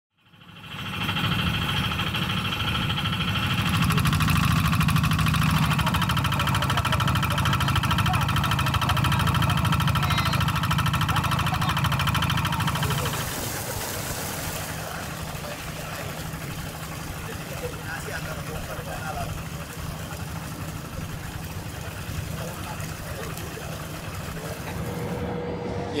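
Engine-driven irrigation water pump running steadily, with water gushing from its outlet pipe. The sound drops noticeably in level about halfway through.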